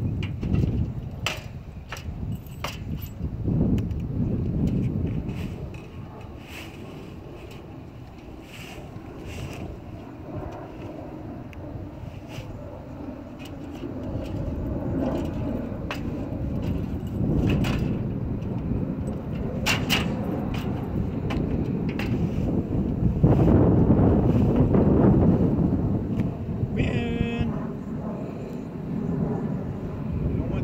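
Rustling and dragging of a fabric trailer cover being pulled over a travel trailer's roof, with scattered clicks and uneven wind rumble on the microphone. A short squeaky sound comes near the end.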